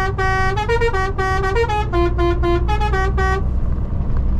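Truck's musical air horn playing a quick tune of about twenty short notes that step between a few pitches, ending about three and a half seconds in, over the steady low running of the lorry's engine.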